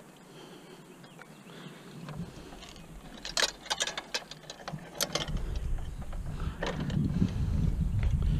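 Push garden seeder rolling over tilled soil, its wheel-driven seed plate mechanism clicking in a quick run of clicks about three to five seconds in. A low rumble sets in after about five seconds.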